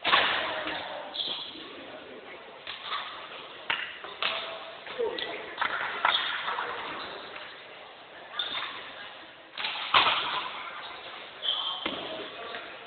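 Badminton rackets striking a shuttlecock during a rally. There is a series of sharp hits a second or two apart, each echoing briefly in a large hall.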